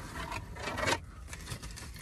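Cardboard pizza box rubbing and scraping as its lid is opened and the box is shifted on a lap, most of it in the first second.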